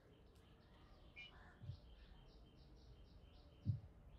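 Near silence: faint room tone. Through the middle there is a faint run of quick high chirps, like a distant bird, about six a second. Near the end comes one brief, soft low sound.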